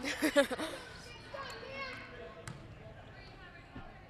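A commentator laughs briefly, then gymnasium game sound follows: a basketball being dribbled on the hardwood under faint voices from the court and stands, with one sharp click about two and a half seconds in.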